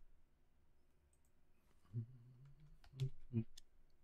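A few faint computer mouse clicks. About two seconds in, a man gives a short low hum, then two brief throaty sounds.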